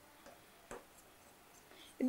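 Faint taps and strokes of a pen writing on a board, a handful of light clicks with the clearest about three-quarters of a second in.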